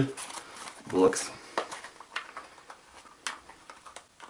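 Bundeswehr G3 magazine pouch being handled: rustling of its camouflage fabric and a few sharp clicks as the flap and its plastic pull-tab closure are worked.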